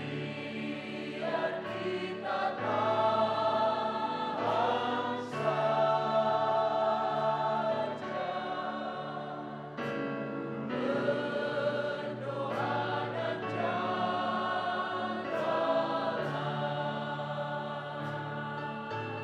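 A mixed choir of men and women singing an Indonesian worship song, holding long notes in phrases.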